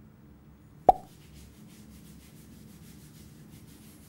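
A single sharp wet plop about a second in, then a run of soft, quick rubbing strokes of soap being scrubbed into wet hair.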